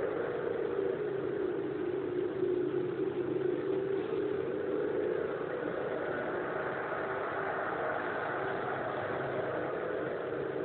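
A steady drone that holds an even pitch throughout, slightly louder in the first half and without breaks or distinct events.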